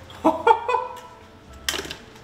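Raw eggs cracked against the rim of a glass pitcher: a few quick clinks with a short ringing tone in the first second, and a sharp crack near the end.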